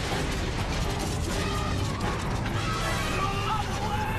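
Cartoon action sound effects: a steady, dense clattering rumble of wood being smashed and animals stampeding, with faint music underneath.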